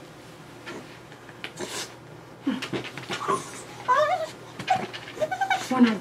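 Miniature schnauzer whining and whimpering in short, rising cries from about halfway in.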